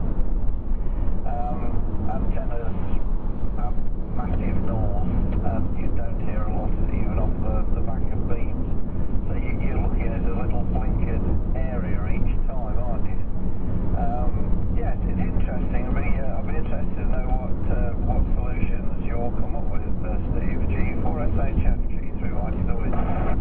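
Steady low road and engine rumble heard inside a car cruising at motorway speed, with indistinct voices talking over it throughout.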